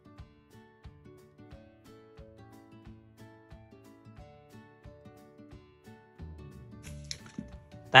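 Soft background music with held tones and a steady beat. Near the end comes a brief rustle of a paper sticker sheet being handled.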